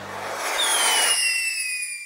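The last notes of the music die away, then a hissing sound effect with a whistle that slides slowly downward starts about half a second in and runs on.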